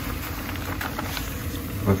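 Handheld garment steamer running steadily, a low hum with steam hiss.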